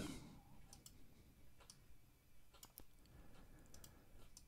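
Near silence with a few faint, sharp computer-mouse clicks spread through it.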